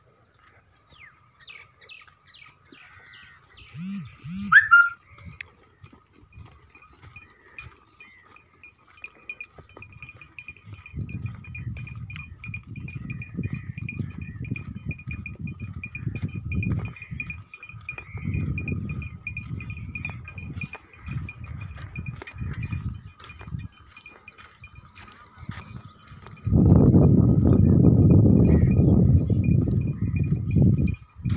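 A herd of goats with a few short bleats, over a steady high-pitched insect buzz. Low rustling noise comes in bursts from about ten seconds in, and a loud rush of wind on the microphone near the end.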